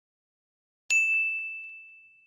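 A single bell-like ding sound effect about a second in: one clear, high tone that strikes suddenly and fades away over about a second and a half.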